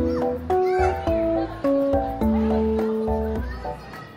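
Background music: a light melody of clear notes stepping from one to the next over a steady bass, with one long held note in the second half.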